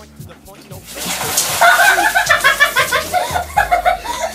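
A bucket of ice water poured over a person's head, splashing down about a second in, over background music with a steady beat and vocals.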